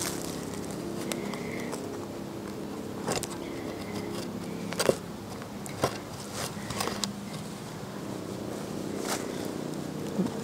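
Fingers digging in loose soil close to the microphone: a few sharp clicks and scrapes scattered through, over a steady low hum.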